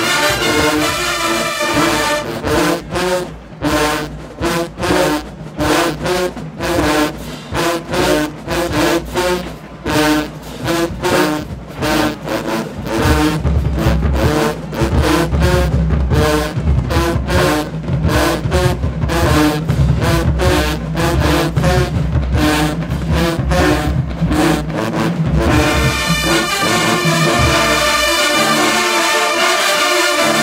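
Marching band with sousaphones playing a stand tune: held brass chords, then a long run of short punchy hits in a steady rhythm, with a deep bass joining about halfway through. Near the end it returns to held brass chords.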